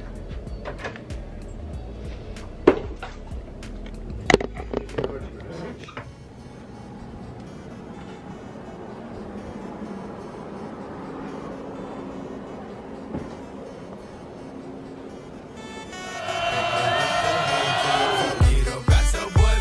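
Scattered sharp clicks and knocks of handling and movement in an emptied dorm room for the first few seconds, then a quieter steady stretch, and loud music coming in about two seconds before the end.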